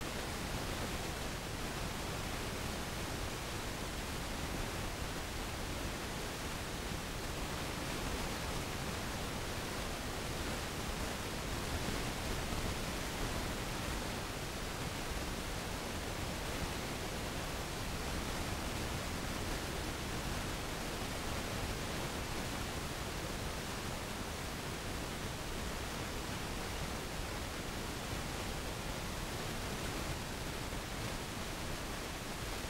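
Steady, even hiss with no rhythm, breaks or distinct events.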